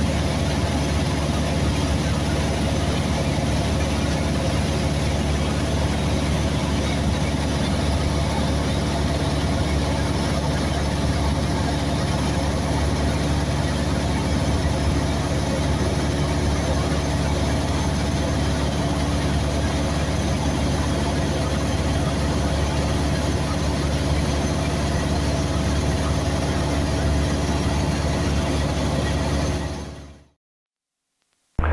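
Cessna 172S's four-cylinder Lycoming engine and propeller droning steadily in cruise, heard from inside the cabin. It fades out at the very end.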